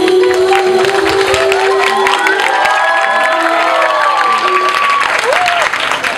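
Audience applauding and cheering at the end of a solo song, with the song's last held note dying away about two seconds in. Whoops and calls rise over the clapping in the middle.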